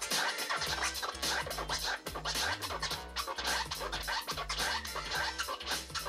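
Turntable scratching through a Serato Scratch Live setup: a record cut back and forth in quick short strokes, with pitch swoops and rapid chops, over a beat with a steady bass line.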